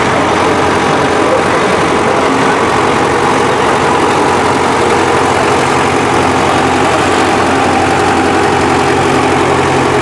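Diesel engines of vintage Ford tractors running steadily at low engine speed as the tractors drive slowly past, close by.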